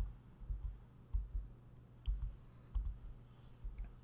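A few faint, irregular clicks from a computer keyboard and mouse, with some soft low thumps and a steady low electrical hum underneath.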